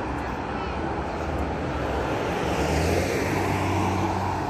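Road traffic: a passing car's tyre and engine noise, swelling to its loudest about three seconds in.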